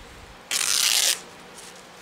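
Calico fabric torn by hand: one short rip about half a second in, lasting just over half a second.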